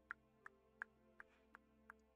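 Faint clock ticking, regular at about three ticks a second, the sound of the freshly repaired pocket watch, over soft sustained background music.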